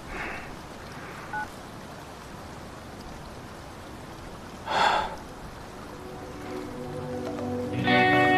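Steady background hiss with a short two-note electronic beep about a second and a half in, a phone's call-ended tone. Near the middle comes one short loud burst of noise, and soft music with held tones swells in near the end.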